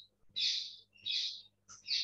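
A bird chirping: three short, high calls, evenly spaced about two-thirds of a second apart.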